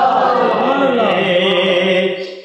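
A man singing a Punjabi naat without accompaniment, drawing out long held notes that slide in pitch.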